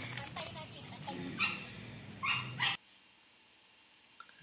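Three short, high-pitched yelps over faint background voices, then the sound cuts off suddenly about three quarters of the way through, leaving near silence.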